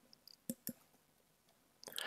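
Two faint, quick clicks about a fifth of a second apart, a button or key being pressed at a computer to run a line of code, against near silence.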